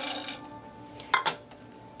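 Two quick knocks of a kitchen utensil against a frying pan, about a second in.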